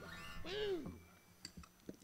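The band's final guitar chord dying away at the end of the song. A short voice sound that rises and falls in pitch comes about half a second in, then a few faint clicks near the end.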